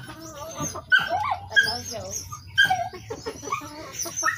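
An animal vocalizing in a rapid run of short, pitched cries and whines that bend up and down in pitch.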